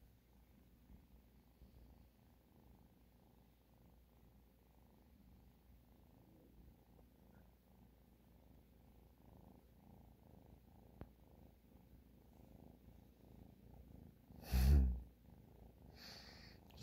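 A young tabby kitten purring close to the microphone: a soft, low rumble that swells and fades in slow, even pulses with each breath. About a second and a half before the end there is one brief, loud scuff.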